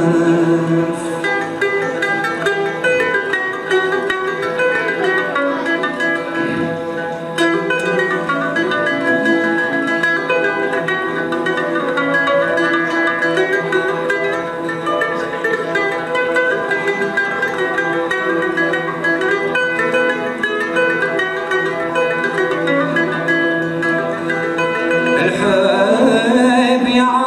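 Algerian Andalusian orchestra playing an instrumental passage: plucked ouds, mandolins and guitars with violins carrying the melody together, swelling louder near the end.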